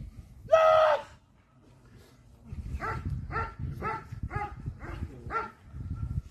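A dog barking in a steady run of six barks, about two a second, in the second half. About half a second in comes a single louder, longer call.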